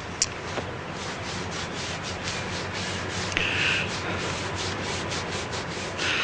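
Hands rubbing and shaping wet clay on a turning potter's wheel, a quick, even rhythm of rubbing strokes.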